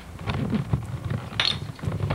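A run of irregular clicks and knocks, with a brighter, sharper clatter about one and a half seconds in.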